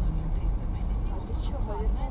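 Steady low rumble of a car's engine and tyres on a snowy road, heard inside the moving car, with faint voices talking in the cabin in the second half.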